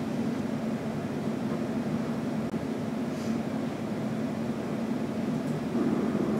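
Steady low machine hum of a room's fan or ventilation noise, unchanging throughout, with a faint brief hiss about three seconds in.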